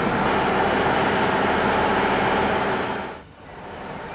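KiHa 48 diesel railcar's engine running steadily while the car stands at the platform. The sound drops away sharply about three seconds in, then goes on more quietly.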